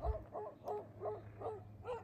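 A loose dog barking in a quick run of about seven short barks, fairly faint.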